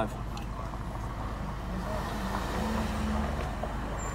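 Steady low hum of a car engine idling, heard from inside the cabin, with faint muffled voices partway through.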